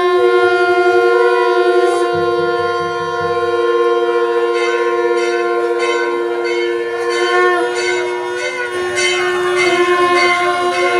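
Several conch shells blown together in long held notes at different pitches, overlapping into a steady chord; some drop out about seven and a half seconds in and come back shortly after.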